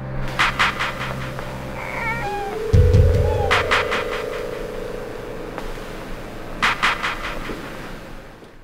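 Film score of sustained tones with clusters of quick clicks. About two seconds in, a baby gives a brief, wavering cry.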